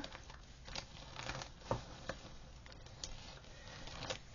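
Faint rustling of a large sheet of gridded 28-count Lugana cross-stitch fabric being unfolded and handled, with a few soft, scattered clicks.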